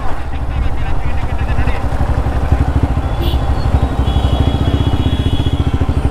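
Motorcycle engine running steadily under way, heard from on board, with an even, rapid run of exhaust pulses.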